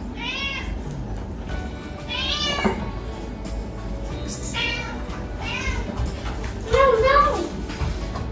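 Domestic cat meowing about five times, each call rising and falling in pitch, begging for the raw turkey being cut.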